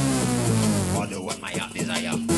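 Old-school rave music from a DJ mix: a buzzy synth note slides down in pitch over about a second, followed by a busier, choppier stretch before the slide comes round again.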